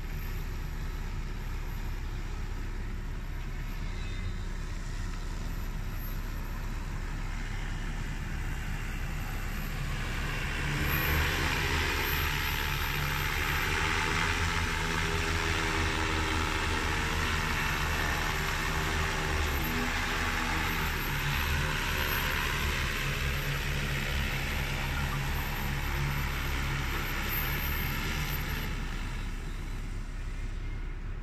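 Propellers and motors of a JT30L-606 30-litre agricultural spraying drone. A distant steady hum grows, about ten seconds in, into a loud buzz with several pitched tones as the drone comes close. The pitch dips briefly midway, and the sound stops near the end as the drone sets down on the field.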